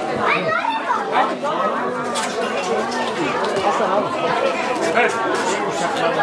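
Many people talking at once: a steady background of overlapping conversation from a crowd of guests, with no single voice standing out.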